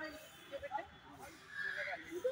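Indistinct voices of people talking, in short scattered snatches.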